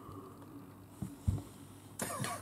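Quiet room tone with two soft, low thumps a little after a second in.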